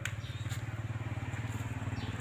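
A small engine idling steadily, a rapid, even chugging that carries on without change.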